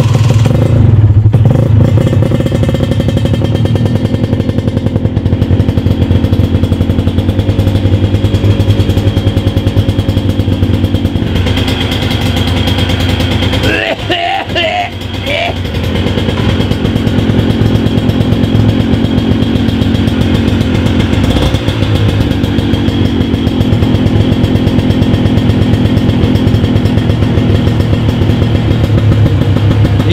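Honda NSR 125 R's single-cylinder two-stroke engine idling steadily, run to warm the oil before it is drained. The level dips briefly about halfway through.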